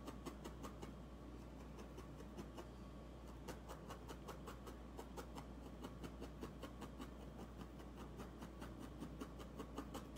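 Felting needle jabbing again and again through wool into a foam pad: a fast, irregular run of faint, soft ticks.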